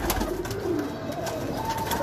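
Domestic pigeons in a loft, with a quick flurry of wing flaps near the start as a released pigeon flies in, and a low pigeon call soon after.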